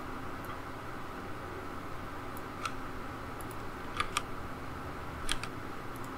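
A handful of light clicks from the computer's keys and mouse buttons, about five spread through the middle and latter part, over a steady low hum and hiss of room noise.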